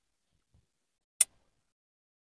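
A single sharp crack about a second in: the shell of a king crab leg snapping as it is pulled apart by hand.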